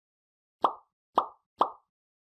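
Three short pop sound effects about half a second apart, like those that go with icons popping onto the screen in an animated outro.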